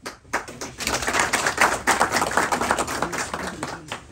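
A small audience clapping, starting just after the beginning, loudest in the middle and tapering off near the end.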